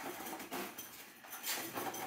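Faint, irregular scraping and rattling of a flexible bending coil being handled and pulled at the end of a 3-inch schedule 40 PVC conduit.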